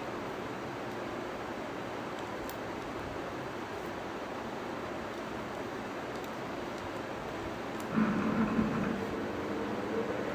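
Steady background hiss, with a louder, steady droning hum coming in about eight seconds in.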